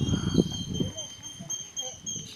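People talking indistinctly, with a steady high, thin whistling tone held above the voices throughout.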